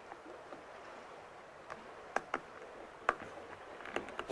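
Faint handling of a plastic SAE cable connector being pushed into a solar hub's socket, with three small sharp clicks in the second half.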